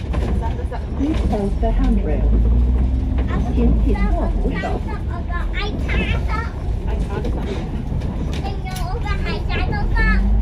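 Alexander Dennis Enviro500 MMC double-decker bus heard from inside on the move: a steady low engine drone, with a rising whine about two seconds in as it gathers speed. Indistinct passenger voices over it.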